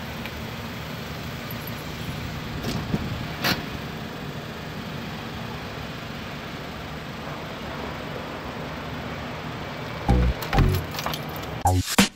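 A Nissan hatchback's engine running steadily with a low hum, with two light clicks a few seconds in. About ten seconds in, music with a heavy beat starts.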